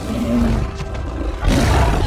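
A giant gorilla's roar, with a loud burst about one and a half seconds in.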